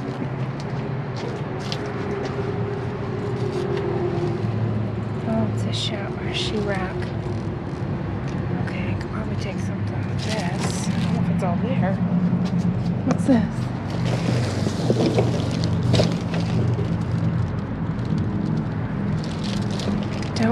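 A steady low hum runs throughout, with scattered clicks, knocks and rustles of junk being handled and bits of indistinct talk.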